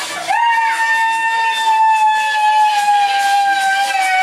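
A high-pitched voice swoops up into one long held cry, a celebratory whoop that stays nearly level for about four seconds and dips slightly at the end.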